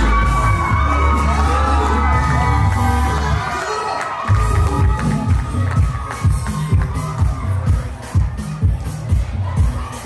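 Music playing in a hall with a crowd cheering and calling out over it. About four seconds in the heavy bass stops, and the music goes on as a beat of sharp strokes under the crowd's voices.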